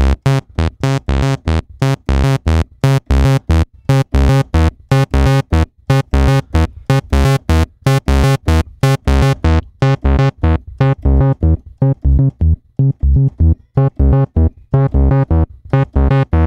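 Moog Sub 37 analog monosynth playing a fast repeating pattern of short bass notes, about four a second, with its multi-drive adding grit. About ten seconds in the tone turns duller as the filter is closed down, then brightens again near the end as it is opened up.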